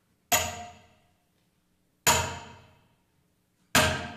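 Three hammer blows on a metal nail, spaced about a second and three-quarters apart, each a sharp metallic clang that rings out briefly and fades within a second.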